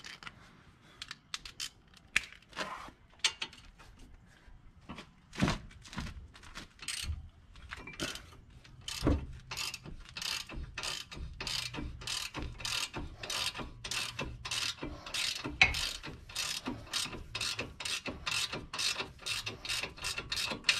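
Hand ratchet wrench clicking as a brake caliper bolt is backed off. The first half has scattered clicks and a couple of knocks; the second half has a steady run of about three clicks a second.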